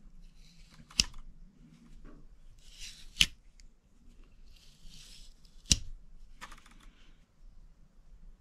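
Case Folding Hunter pocket knife being opened by hand: three sharp clicks about two seconds apart, the blade snapping against its spring, the last click the loudest, with soft handling noise between them.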